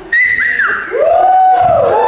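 Loud whistling: a short high note, then a longer, lower note that rises, holds and falls away.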